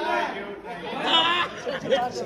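Several people talking over one another, with one voice louder about a second in.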